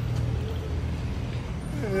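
Steady low rumble of a motor vehicle engine running on the street, with a voice starting just at the end.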